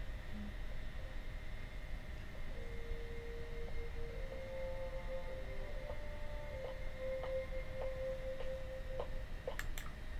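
Faint soundtrack of a Blu-ray film playing, low sustained music-like tones that come in a couple of seconds in, with a few soft ticks over a steady background hum.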